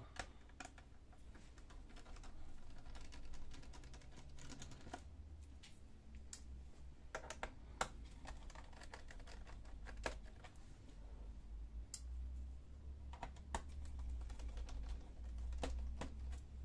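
Faint, irregular small clicks and taps of a screwdriver and gloved fingers working screws out of a laptop's plastic bottom panel, over a low steady hum.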